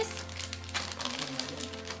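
Plastic and foil candy bags crinkling and rustling as a hand rummages through a box packed with chocolates, in quick irregular bursts.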